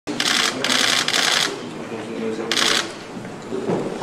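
Press camera shutters firing in rapid bursts: a long run of clicking in the first second and a half and a shorter burst about two and a half seconds in, over low voices.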